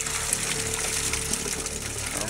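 Water splashing and churning as a school of piranhas thrashes at a piece of meat held at the surface, with background music underneath.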